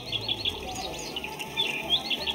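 Battery-operated toy birds chirping electronically: quick runs of short, high chirps in two bursts, with a brief gap in the middle.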